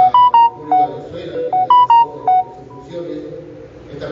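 A short electronic melody of clear beeping notes, about six notes rising and falling, played twice about a second and a half apart.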